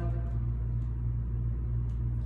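Steady low hum of a building's ventilation system, unchanging throughout, with a faint click near the end.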